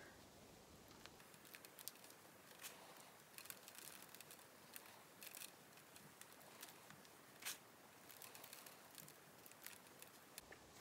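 Near silence with faint, scattered soft scratches and ticks of fingers rubbing dry soil over a mud ball, a little louder once about seven and a half seconds in.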